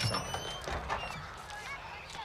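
Small birds chirping in many quick, short notes, with a couple of soft knocks about a second in.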